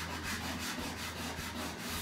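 Sandpaper rubbed by hand over a woven wood-splint basket in quick, even strokes, smoothing the wood before painting.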